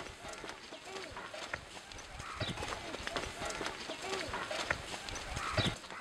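Village outdoor ambience: children's voices mixed with goats and other livestock, with many scattered light clicks and knocks. Two louder calls stand out, about two and a half seconds in and near the end.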